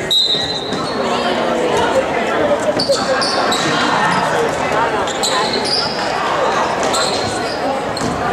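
Youth basketball game in a gym: a short referee's whistle blast right at the start, then the ball bouncing and a few brief sneaker squeaks on the hardwood floor as play restarts, over spectators' chatter.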